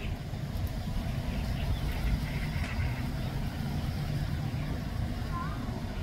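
Wind buffeting the phone's microphone, a gusty low rumble throughout, with a short faint chirp about five and a half seconds in.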